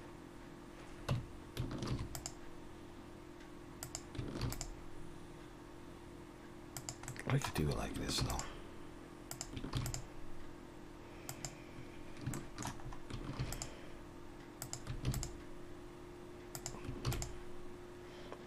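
Computer keyboard keys and mouse buttons clicking at an irregular pace, single clicks and short runs, over a steady hum.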